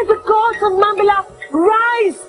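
A woman's voice crying out in two long, high-pitched drawn-out calls, the second starting about a second and a half in.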